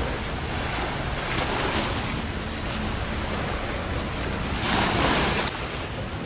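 Wind on the microphone and choppy sea water washing, with the low steady drone of a passing wooden fishing boat's engine underneath; a louder rush of wind and water about five seconds in.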